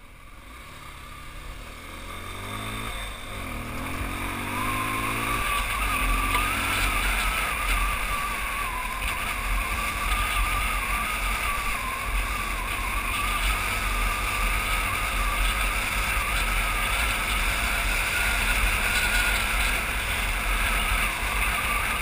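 Motorcycle pulling away and accelerating, its engine note rising twice with a drop at each upshift in the first five seconds or so. It then cruises along a dirt road, where a steady rush of wind noise on the microphone covers most of the engine.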